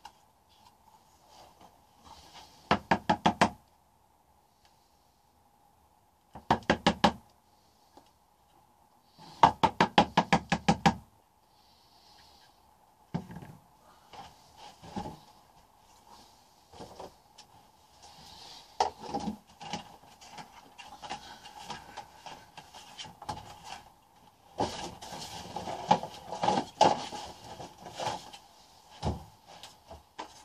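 Three quick runs of rapid, evenly spaced knocking a few seconds apart, the last and longest near the middle. Scattered single knocks and rubbing follow, over a faint steady hum.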